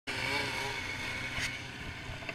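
Polaris Switchback Assault 144 snowmobile's two-stroke engine running steadily through a Bikeman Velocity trail can exhaust.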